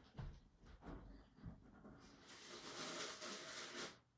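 Faint household sounds from out of view: a few light knocks, then a steady hiss for about two seconds that stops suddenly near the end.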